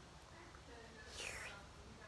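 A person's faint, short breathy sound, like a whisper, a little over a second in, against a quiet room.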